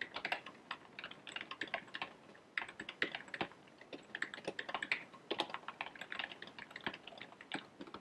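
Typing on a computer keyboard: quick runs of keystroke clicks with short pauses between them.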